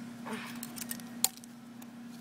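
Clear plastic packaging and small plastic Beyblade parts being handled: light crinkling and clicking, with one sharp click a little over a second in, over a steady low hum.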